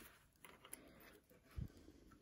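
Near silence, with faint handling of knit fabric at the serger and a soft low bump about one and a half seconds in.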